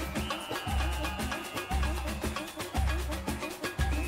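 Upbeat samba dance track with busy Latin percussion over a pulsing bass line, instrumental at this point.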